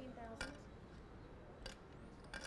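Poker chips clicking together: two sharp clicks, the first about half a second in and the second about a second later.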